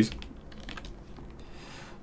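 Computer keyboard keys clicking softly a few times, typing during a pause in coding.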